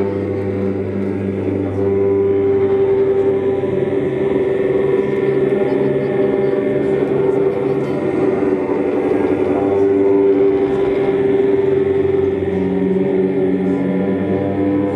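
Live drone music: a man's voice chanting low, sustained notes into a microphone over steady, droning instruments, with no beat. A strong held tone swells from about two seconds in and eases near the end.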